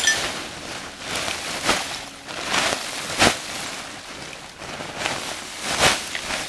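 A large plastic sack rustling as it is shaken out, with dry debris pouring from it onto the ground. The noise comes in several separate bursts; the loudest is about halfway through and another is near the end.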